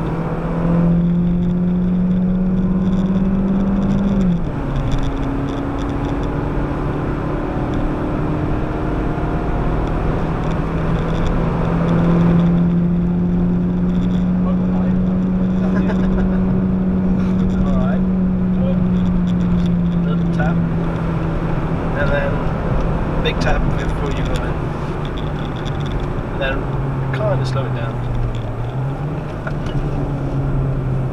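Citroën DS3's 1.6-litre petrol four-cylinder engine, heard from inside the cabin, running hard at high revs under road and tyre noise. Its pitch drops sharply about four seconds in as the automatic gearbox changes gear, climbs back and holds, then sags near the end as the car slows.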